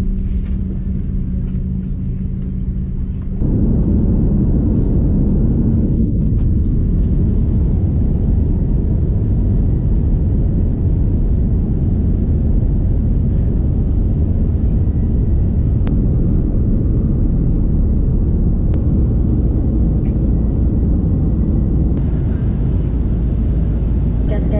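Jet airliner cabin noise: a steady, loud roar of engines and rushing air while climbing out. In the first three seconds, still at the gate, a quieter steady hum with a clear droning tone, which cuts to the louder climb roar.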